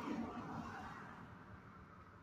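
A soft, breathy exhale from a woman pausing mid-sentence, fading out over about a second and a half into faint room tone.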